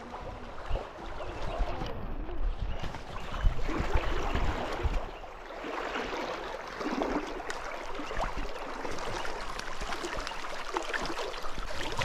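Shallow river running over stones: a steady rush of moving water.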